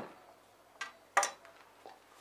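Three light clicks or taps, the sharpest a little past a second in.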